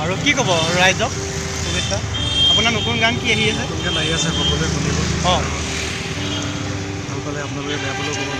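Men's voices talking over a steady rumble of street traffic.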